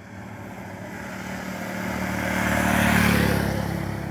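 A motor vehicle driving past on the road: engine and tyre noise growing steadily louder to a peak about three seconds in, then fading.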